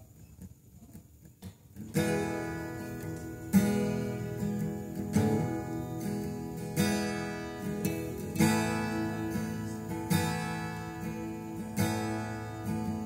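Acoustic guitar strummed, starting about two seconds in after a near-quiet moment, with strong accented chord strums about every second and a half.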